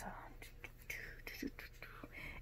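Faint whispered muttering under the breath, with soft rustling as a fabric scarf is handled and wrapped.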